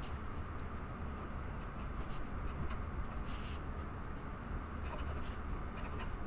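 Felt-tip marker writing on paper: short, irregular scratchy strokes as letters and symbols are drawn, over a steady low hum.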